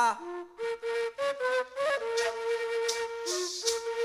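Colombian gaita (cane duct flute) playing a cumbia melody in short, separated notes, with a maraca shaking in the second half.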